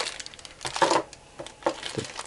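Cardboard box and plastic packaging being handled: a few short rustles and light taps as a bagged light switch is drawn out of its box.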